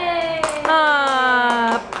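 People cheering with long, high-pitched whoops that slowly fall in pitch, with a few sharp hand claps.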